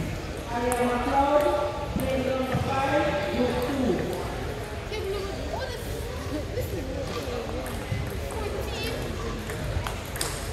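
Several voices talking in a large hall, with the light clicks of table tennis balls being hit and bouncing on the tables.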